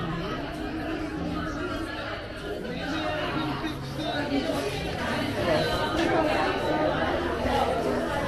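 Indistinct chatter of several people talking in a café dining room, with no single voice standing out.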